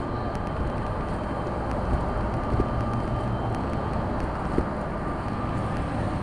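City street traffic: a steady low rumble of vehicles on the roadway.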